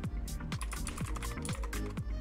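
Computer keyboard typing, a quick run of keystroke clicks, over background music with a steady beat.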